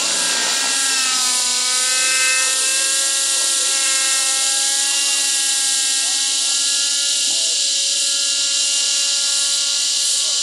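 Align T-Rex 600 nitro RC helicopter's glow engine and rotors running in flight, a steady engine note that drops a little in pitch in the first second or so and then holds, with a strong hiss over it.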